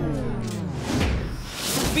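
Editing sound effect at a scene change: the preceding sound slides down in pitch and grinds to a halt like a tape or record being stopped, followed near the end by a rising whoosh.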